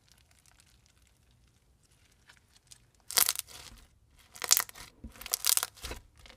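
Crunchy blue slime with foam beads being squeezed and pressed by hand: faint crackles at first, then three loud bursts of crunching and crackling in the second half.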